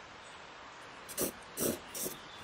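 Pencil strokes scratching on drawing paper: quiet at first, then a few short, faint strokes in the second half.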